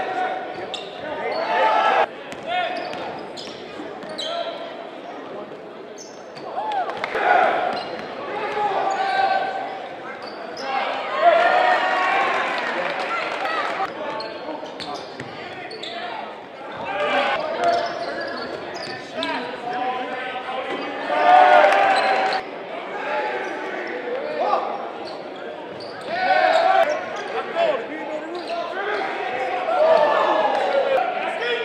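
Live game sound of high school basketball in a gym: the ball bouncing on the hardwood floor amid indistinct shouts and chatter from players and spectators, echoing in the hall. Louder swells of voices come and go with the play.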